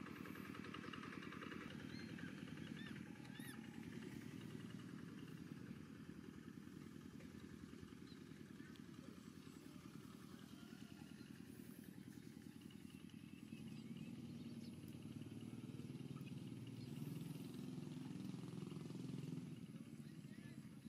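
A motor vehicle engine running steadily, a low rumble that grows somewhat louder in the last few seconds.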